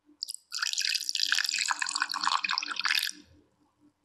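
Milk poured from a small jug into a glass mixing bowl onto cream cheese and melted butter. A couple of brief splashes come first, then a steady splashing pour from about half a second in, which stops about three seconds in.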